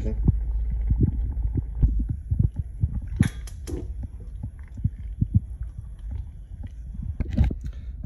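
Pot of thick chili being stirred with a wooden spoon, giving many soft, low, wet thuds, with a few sharp clicks about three seconds in and again near the end.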